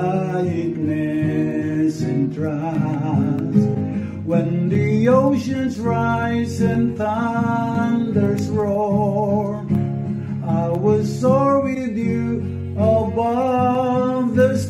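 A man singing a slow worship song, accompanying himself on acoustic guitar.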